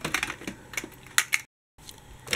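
Toy trams clattering against one another and the plastic storage box as a hand rummages through them: a run of light clicks and knocks, with a couple of sharper clicks near the middle. The sound cuts out briefly about three quarters of the way through.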